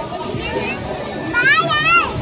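A young child's high-pitched, wavering squeal lasting about half a second, starting a little past halfway, over a background of crowd chatter.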